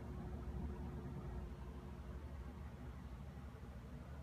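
Quiet room tone: a low, steady rumble with a faint hum that fades out about three seconds in.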